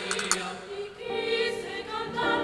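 Choir singing a religious hymn in Spanish: a short sung phrase, then a held chord of several voices from about halfway.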